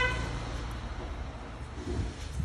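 Steady low rumble of road traffic, with a vehicle horn's toot cutting off right at the start.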